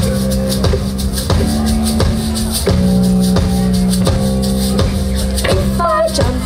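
Live band playing a song's opening: sustained chords over a steady drum beat, about three beats every two seconds, with shaken percussion on top. A woman's singing voice comes in near the end.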